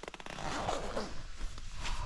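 Zip on a down jacket being drawn closed: a quick run of fine ticks at the start, then a rough scraping rasp.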